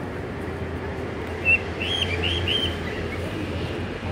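Four short, high chirps in quick succession starting about one and a half seconds in, the first the loudest, over a steady low hum.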